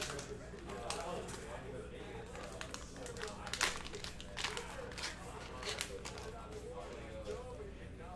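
Silver foil card-pack wrapper crinkling and tearing as it is pulled open by hand, with a few sharper crackles about three and a half to six seconds in. A faint voice runs underneath.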